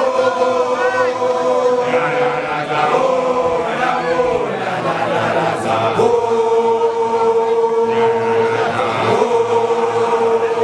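A large group of male voices chanting together in unison: the Sesotho initiates' group chant. They hold one long note, break into moving phrases around the middle, then take the long held note up again.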